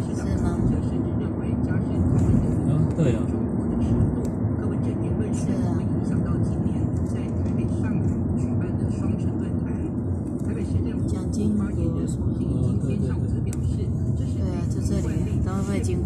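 Steady low rumble of a moving road vehicle heard from inside its cabin, with people's voices in the background.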